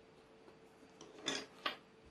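Two short taps about a third of a second apart, over a faint steady hum: a small tube of superglue set down on a plastic cutting mat as the balsa fuselage frame is handled.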